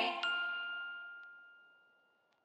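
The end of a sung show jingle: a woman's last held note stops, and a single bright bell-like ding rings out and fades away over about a second and a half.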